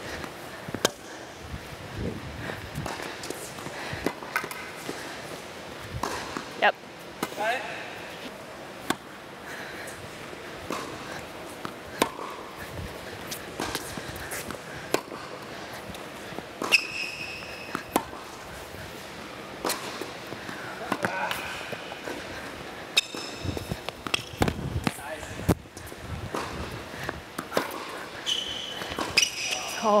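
Tennis balls being struck by racquets and bouncing on an indoor hard court during a rally, a series of sharp irregular pops, with brief high squeaks of tennis shoes a few times.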